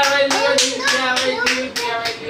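Rhythmic hand clapping, about three to four claps a second, over a steady held vocal tone.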